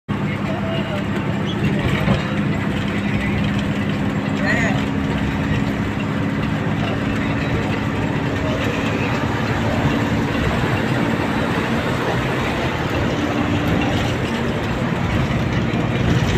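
Steady low engine hum and road noise inside the cabin of a moving bus on the highway.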